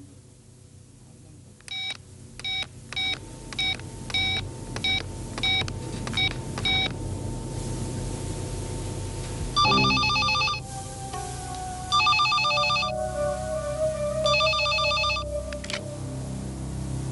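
A push-button telephone being dialled, about nine short, identical key beeps in five seconds. Then an electronic telephone ringing in three warbling bursts of about a second each, a couple of seconds apart.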